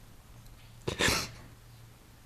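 A man holding back tears takes one short, sharp, noisy breath about a second in.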